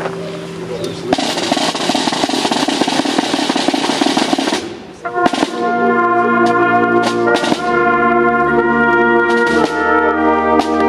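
A drum roll lasting about four seconds, then, after a short break, a brass band playing long, sustained chords.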